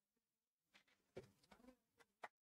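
Near silence: quiet room tone, with a faint brief sound about a second in.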